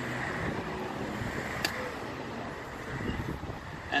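Steady outdoor background noise, a low rumble with hiss, like wind on the microphone or distant traffic, with a single sharp click about a second and a half in.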